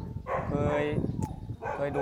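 A man speaking Thai in short, broken phrases, starting to answer a question.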